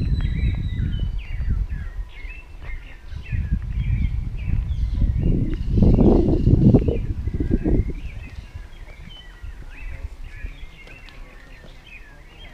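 Many birds chirping and calling at once in the surrounding trees, over a low, uneven rumble on the microphone that swells about six seconds in and eases off after about eight seconds.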